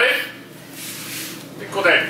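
Two short called-out words in a voice, one right at the start and another shortly before the end, with the room quieter in between.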